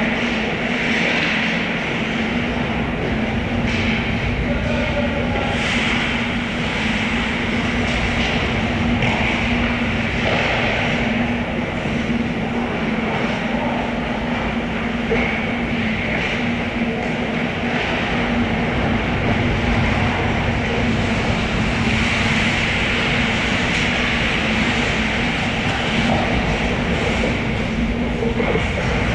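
Steady rumbling ambience of an indoor ice rink during a hockey game, with a constant low hum running under it and a hissy scraping that swells now and then, as from skates on the ice.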